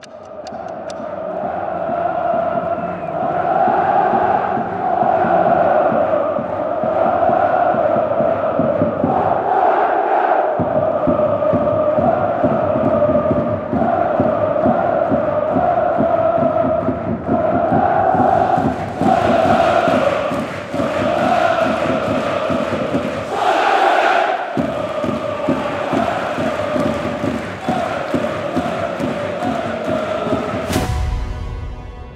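A large crowd of voices chanting a repeating melody in unison, like a football stadium song, running steadily and loud. The bass drops out briefly about ten seconds in and again about twenty-four seconds in.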